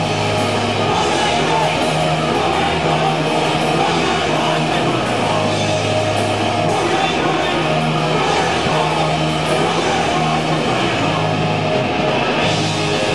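Live punk rock band playing loud: electric guitars, bass changing notes every second or two, and a drum kit with frequent cymbal strikes.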